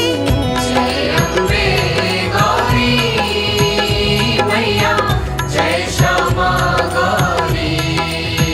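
Devotional Hindu aarti music: a sung, chant-like vocal over a steady rhythmic accompaniment.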